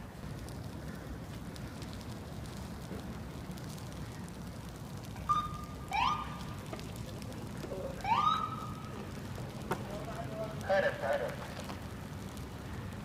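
People shouting in the open street over a steady noisy background: two long shouts rising in pitch about six and eight seconds in, then shorter shouted words near the end.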